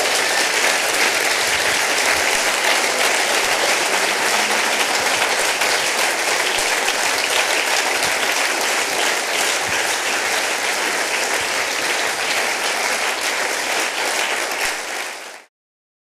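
Audience applauding steadily, cut off suddenly near the end.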